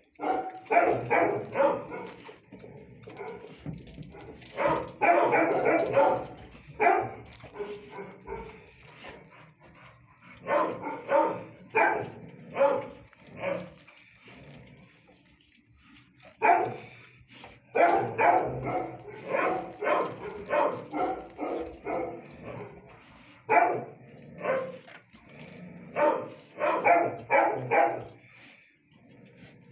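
Dogs barking in a shelter kennel, in rapid runs of short barks that come in bursts of a few seconds each with quieter gaps between them.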